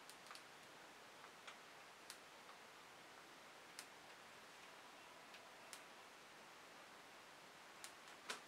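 Near silence broken by a handful of faint, sharp clicks at irregular intervals, from a nearly empty plastic squeeze bottle of acrylic paint being squeezed to drop small dots.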